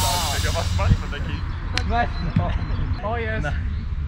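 Players hitting a large inflatable gymnastics ball during a beach volleyball rally: about three sharp hits, the loudest about a second in, mixed with short shouts from the players. Background music fades out in the first second.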